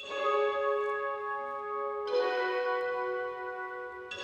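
Bell-like chimes struck twice, about two seconds apart, each a chord of several tones that rings on without fading much.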